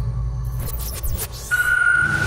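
Electronic logo sting: deep bass under a run of swishing sweeps, then a steady high ringing tone that comes in about one and a half seconds in.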